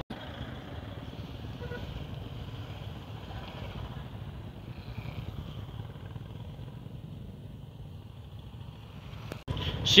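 Royal Enfield motorcycle engine running steadily while riding, a low even drone with road noise, with a brief dropout near the end.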